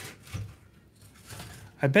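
Mostly quiet room tone with one brief low sound about half a second in, then a man's voice starting near the end.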